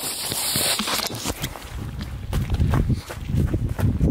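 Footsteps of a person walking, with rustling and knocks from clothing rubbing against a hand-held camera's microphone, loudest in the first second.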